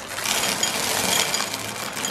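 M&M's candies poured from their bags into a bowl: a continuous dense rattle of many small hard-shelled candies hitting the bowl and each other.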